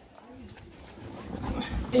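Quiet vehicle cabin while driving on a rough dirt track, with a couple of low thumps near the end, then a voice starting.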